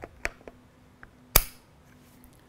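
A DSLR being seated on a tripod head: a few light clicks and knocks, then one sharp, loud click about a second and a half in as it sets in place.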